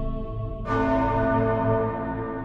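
Ambient background music with a bell-like tone struck about two-thirds of a second in, ringing on and slowly fading.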